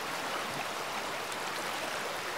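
Steady rushing of a flowing stream, an even wash of water noise with no single splashes standing out.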